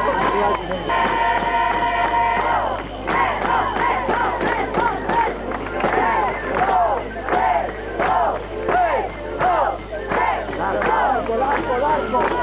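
A crowd's voices mixed with music or singing, including one long held note about a second in, over a steady low hum.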